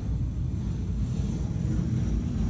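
Full-size jet aircraft landing, heard as a steady low rumble.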